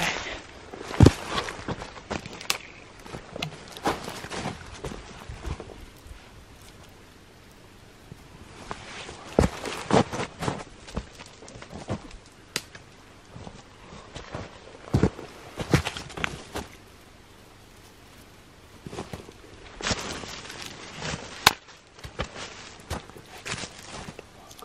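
Footsteps crunching in crusty snow, with snaps and knocks as twigs are handled, in several short bursts with quiet pauses between.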